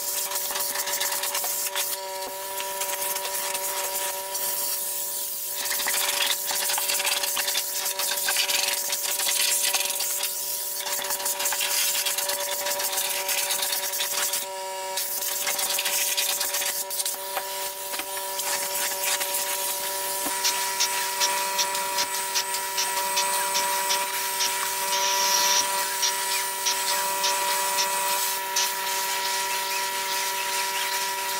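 Hot water extraction on stair carpet: the extractor's vacuum runs with a steady whine, and air and water rush through the stair wand and hose. The rush briefly drops out about halfway through.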